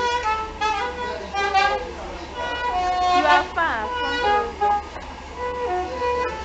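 Saxophone playing a melody of short held notes, with a quick downward slide about halfway through.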